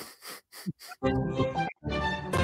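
Ticking of an online number picker wheel as it spins to a stop, the ticks about a third of a second apart, followed about a second in by a short musical jingle as the wheel settles on a number.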